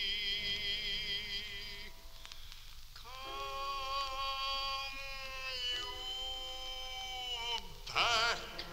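Music from an old recording of a baritone song with orchestra: long held notes with vibrato. One phrase fades about two seconds in, and another swells from about three seconds in and holds until shortly before the end.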